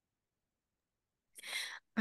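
Dead silence, then near the end a short, sharp intake of breath from a woman about to speak.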